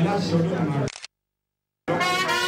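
A man's voice through a handheld microphone, cut off abruptly about a second in, then nearly a second of dead digital silence before sound comes back just at the end.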